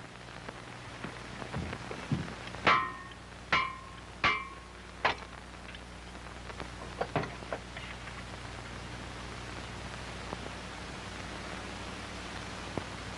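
Four sharp metallic clanks, each ringing briefly, a bit under a second apart, from metal being struck while an old car's engine is worked on, followed by a few lighter clicks. Steady film-soundtrack hiss underneath.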